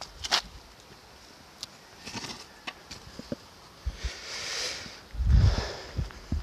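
Scattered small clicks and rustling of a heavy lawn-mower rear axle with both tyres being carried on gravel, then a dull low thud a little after five seconds in as it is set down.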